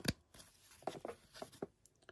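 Cardstock trading cards sliding against each other as they are flipped through by hand, a handful of soft, short swishes.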